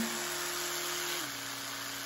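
Oral-B Smart 1500 rechargeable electric toothbrush running unloaded with a steady hum, which steps down to a lower, slightly quieter hum about a second in as it is switched to its softer speed.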